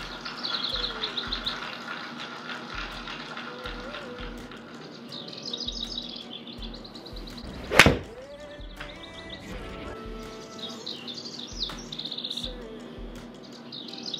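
A single sharp strike of a forged TaylorMade P770 iron hitting a golf ball about eight seconds in, over background music.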